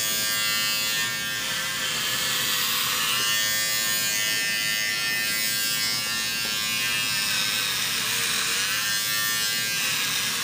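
Corded electric hair clippers running against a man's scalp as he shaves his head: a steady buzz whose pitch wavers a few times as the blades are pressed through the hair.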